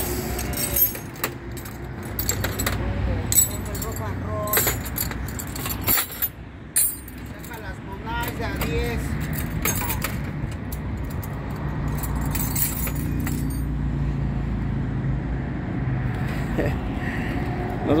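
Small metal pieces clinking and rattling as they are handled, in many short irregular clicks over a steady low rumble, with faint voices in the background.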